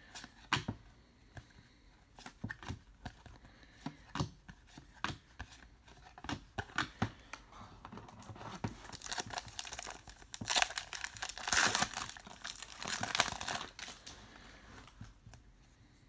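Trading cards being flicked through one by one, a string of sharp little clicks. About nine seconds in comes a spell of loud tearing and crinkling as a trading-card pack wrapper is ripped open, followed by a few more card clicks.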